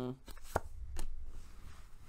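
Tarot cards being shuffled and handled, with two sharp card snaps about half a second apart soon after the start, over a soft rustle of cards.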